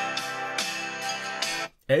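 Strummed guitar music played through the Vivo iQOO 8 Pro's built-in loudspeaker as a speaker test, with about two strums a second, cutting off suddenly near the end. The speaker sounds good and adequate, though not especially full or loud.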